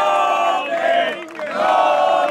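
Crowd of battle spectators chanting and shouting in unison, three loud rhythmic calls in two seconds.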